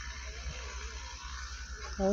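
Quiet room tone: a steady low hum under an even hiss, with no distinct event.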